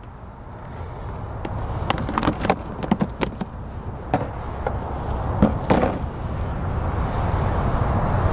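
Sharp clicks and knocks of a clear plastic storage box being handled and lifted off a table, over a low rumble that grows steadily louder.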